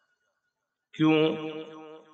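A man's voice after a second of near silence, saying one long, drawn-out word ("kyun", Urdu for "why") held on a steady pitch for almost a second.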